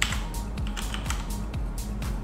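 Computer keyboard being typed on: a quick run of key clicks, several a second, as a ticker symbol is entered into a search box.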